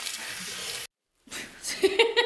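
Water spraying from a salon basin hand shower onto hair, a steady hiss that cuts off abruptly just under a second in. After a brief silence, a woman laughs near the end.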